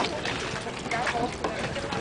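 Indistinct voices of several people talking in the background over steady outdoor noise; no machine is clearly running.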